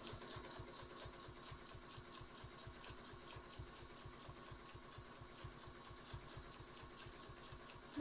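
Sewing machine stitching slowly and steadily in free-motion ruler work: a quiet motor hum with an even, rapid beat of needle strokes, several a second.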